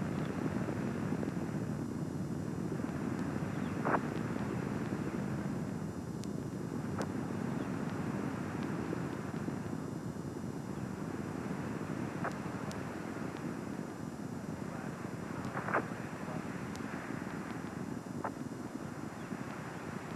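Steady distant rumble of the Space Shuttle's rocket boosters and main engines during ascent, heard from the ground, with a few short clicks scattered through it.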